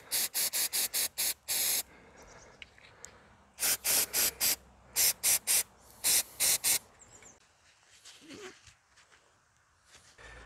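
Aerosol can of mass airflow sensor cleaner sprayed in short, quick hissing bursts into a throttle body to wash off carbon build-up. The bursts come in four clusters, with a longer spray about a second and a half in, and fall quiet for the last few seconds.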